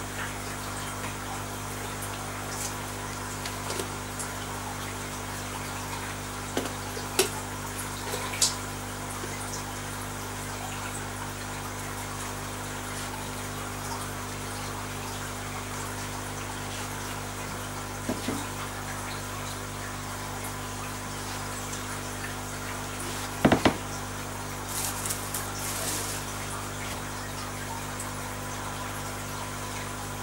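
Steady low hum of aquarium pumps with water bubbling and trickling in the tank. A few short knocks or splashes break in, the loudest about three quarters of the way through.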